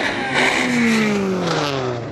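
Race car engine revving hard, its note then falling steadily in pitch over about a second and a half, as a small-displacement touring car leaves the start line.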